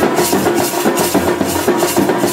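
Indian street brass band playing: large double-headed bass drums beaten with mallets in a fast rhythm, with maracas shaking. A horn holds a steady note over the percussion.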